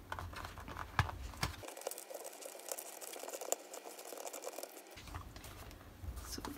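Paper pages and a leather notebook cover being handled as a thick notebook is slid through the cover's elastic band: faint rustling and crinkling, with a couple of soft ticks in the first second and a half.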